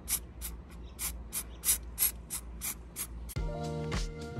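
Rust-Oleum aerosol spray-paint can hissing in short, rapid bursts, about three a second, as paint is sprayed through a stencil. Music starts suddenly near the end.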